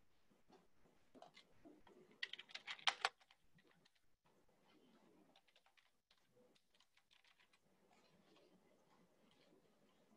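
Near silence, with a short run of faint clicks from typing on a computer keyboard about two to three seconds in.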